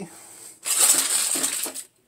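Aluminium foil crinkling as it is handled, in a dense rustle that lasts about a second.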